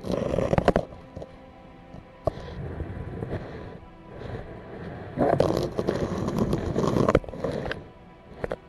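Muffled scraping and knocking from an underwater camera housing dragged up against the river's rock wall, in two loud bursts: one at the start and one from about five to seven seconds in.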